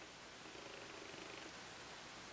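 Near silence: quiet room tone, with a faint low hum that begins about half a second in and lasts about a second.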